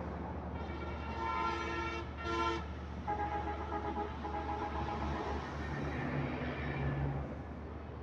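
Horns sounding over a steady low rumble of engines: a long blast about half a second in, a short one right after it, then a second, different-sounding horn held for about two seconds.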